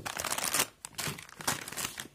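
Soft plastic wet-wipes packet crinkling as it is picked up and set down, in two stretches of irregular crackle.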